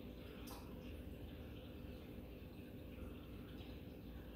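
Faint steady hum of reef-aquarium equipment with a low wash of circulating water, and one light click about half a second in.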